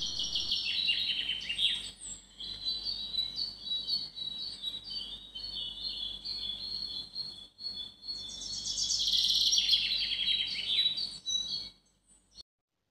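Several birds chirping, with many short high calls overlapping and a denser flurry of calls about nine to eleven seconds in.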